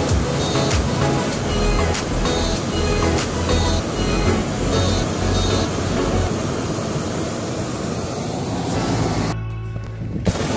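Background music with a steady beat, laid over the rushing noise of a hot air balloon's propane burner firing. The burner noise cuts off suddenly near the end.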